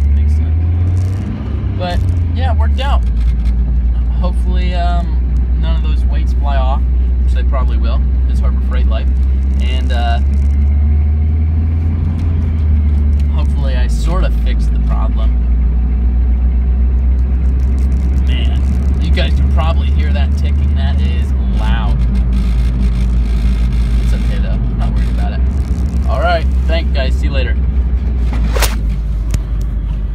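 Steady low engine and road drone inside the cab of a moving truck. The drone shifts in pitch a few times, about two seconds in, about halfway through and again about two-thirds of the way through.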